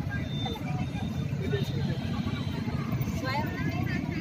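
Outdoor background sound: a steady low rumble like distant traffic, with faint voices of people around and a brief wavering high-pitched voice about three seconds in.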